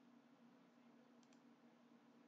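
Near silence: a low steady hum of room tone, with two faint clicks close together a little past a second in, a computer mouse button being clicked.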